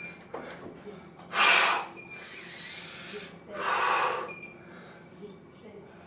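Heavy breathing of an athlete hanging on a pull-up bar during a long timed set: two loud, forceful breaths, about a second and a half and about four seconds in, with a softer breath between them.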